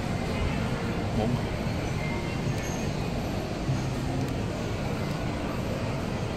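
Steady background hubbub of a busy indoor shopping mall: indistinct voices of people nearby over a constant low rumble.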